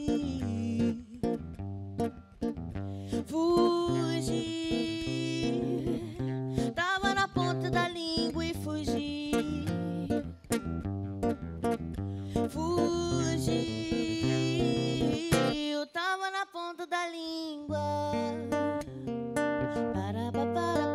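Live song: a classical guitar is played in plucked and strummed chords, with a singer's voice carrying melodic lines over it in several stretches. The bass notes drop out briefly about two-thirds of the way through, then the guitar picks back up.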